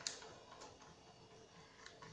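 Near silence, with faint light clicks from a silicone pastry brush oiling the cups of a silicone mould: one click at the very start and one near the end.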